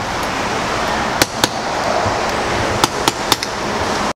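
Sharp metal clicks of a car key being worked in a door lock, about five in two small clusters, over a steady rushing background noise; the key is failing to open the door.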